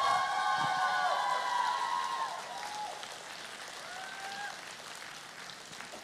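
A concert audience applauding and cheering at the end of a song, with several high voices calling out over the clapping. Loudest at the start, it gradually dies down.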